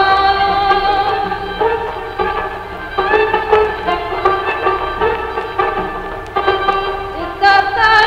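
Azerbaijani folk song: a woman singing in a traditional style over instrumental accompaniment, with long, ornamented held notes.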